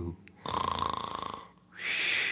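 A cartoon snore: a rattling, pulsing in-breath snore lasting about a second, followed by a long breathy out-breath near the end.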